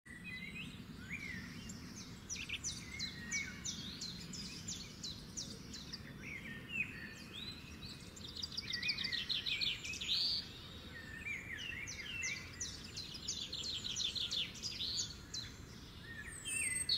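Small birds chirping and twittering, with quick runs of short, high, downward-sweeping notes, over a faint steady low hum.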